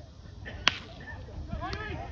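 A bat hitting a pitched baseball: one sharp crack about two-thirds of a second in. A fainter click follows about a second later, with spectators' voices calling out.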